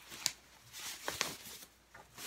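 Soft rustling of a thin white wrapping being pulled back from a banjolele, with two light sharp clicks, the first just after the start and the second about a second later.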